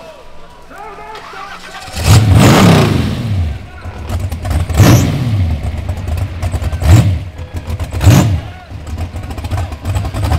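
Rock bouncer buggy's engine revving hard in bursts as it climbs a steep hill. A sudden long rev comes about two seconds in and drops away, then three shorter blips follow, with the engine running loudly between them.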